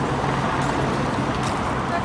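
Steady city street ambience: continuous traffic noise with indistinct voices of people nearby.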